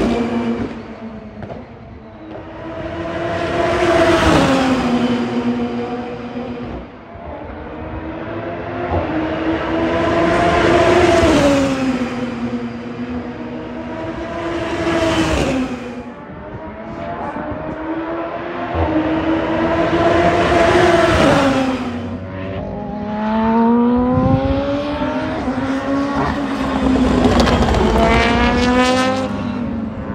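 GT500 race cars' turbocharged four-cylinder engines passing on the circuit, one loud pass after another about every five seconds, the pitch falling as each car goes by. In the last third an engine climbs in pitch through several gears under acceleration.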